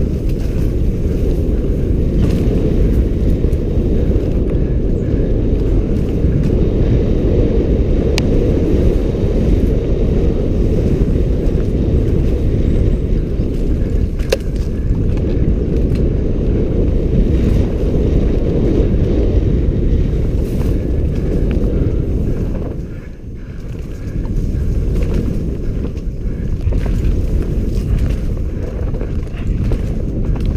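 Wind buffeting a helmet-mounted camera's microphone during a fast mountain-bike descent on a dirt trail, a steady low rush mixed with tyre noise, with a few sharp clicks from the bike. The rush eases briefly a little over twenty seconds in.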